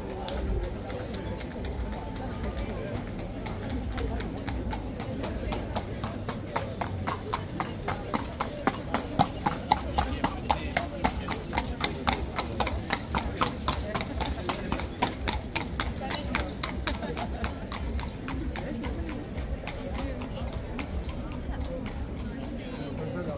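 A carriage horse's hooves clip-clop on cobblestones as a horse-drawn carriage passes, in a quick, even beat. The hoofbeats grow louder to a peak about halfway through, then fade away, over steady crowd chatter.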